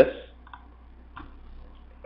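Two faint computer-mouse clicks, about two-thirds of a second apart, over a low steady hum.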